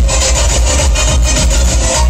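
Loud electronic dance music played by a DJ over a large sound system, with a heavy bass line and a fast, steady beat.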